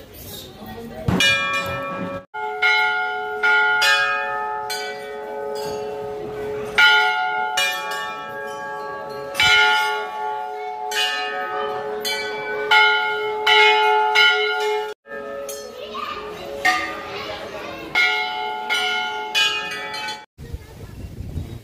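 Temple bells struck over and over, one to two strikes a second, each ring overlapping the next so the tones pile up. The ringing cuts off sharply for an instant twice.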